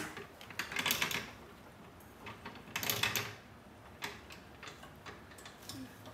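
Floor jack with a wooden engine cradle on top being positioned by its long handle: light metallic clicks and clacks from the jack's handle and casters, in a few short clusters.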